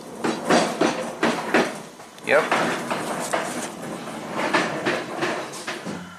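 A man's voice speaking briefly, amid talk that runs through most of the stretch, with scattered sharp clicks and knocks in between.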